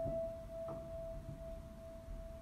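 Quiet piano intro of a song: a couple of soft notes over one long held tone.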